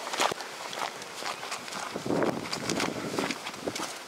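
Rustling and scattered light knocks of movement and handling, with a denser scuffing rustle about two seconds in.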